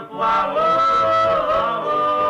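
Male doo-wop vocal group singing a cappella. About a quarter second in, the voices swell into a held close-harmony chord that bends slightly near the middle.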